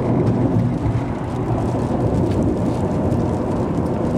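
Steady low rumble of road and engine noise inside a car's cabin at highway speed.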